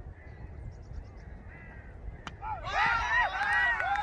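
A crow cawing close by: a run of loud, harsh caws, about three a second, starting about halfway through, preceded by a single sharp knock.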